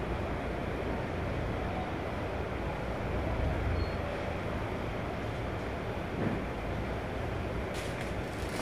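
Steady low rumble of a Toshiba rope-type elevator in motion, with a brief faint high beep about midway.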